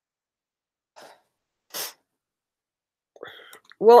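A speaker's breath sounds between words: a faint breath about a second in and a short, sharper intake of breath just before two seconds, then a brief vocal hesitation and the start of speech near the end.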